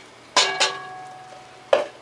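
A plastic measuring cup tapped twice against the rim of a metal stockpot, the pot ringing with a clear tone that fades over about a second. A single duller knock follows near the end.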